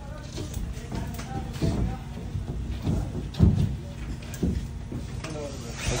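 Low background voices with a few sharp knocks and taps from drywall being pushed up against the ceiling.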